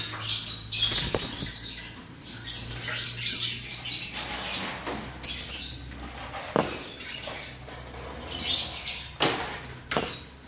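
Caged cucak jenggot bulbuls fluttering their wings in short irregular bursts, with a few sharp clicks against the wire cage.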